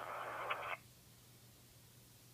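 Scanner speaker playing the tail of a recorded P25 digital police radio transmission: a steady, band-limited hiss with a brief tick, cut off abruptly about three-quarters of a second in as the transmission ends. A faint low hum is left after the cutoff.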